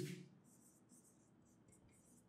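Felt-tip marker writing on a whiteboard: several short, faint strokes.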